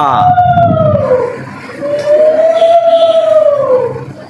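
A man singing long held notes into a microphone, two drawn-out phrases that each rise slowly in pitch and then fall away.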